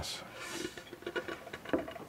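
A few faint, scattered light clicks and taps over quiet room tone.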